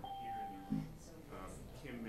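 A single short, steady electronic beep, about two-thirds of a second long, that cuts off abruptly, over people talking in a room.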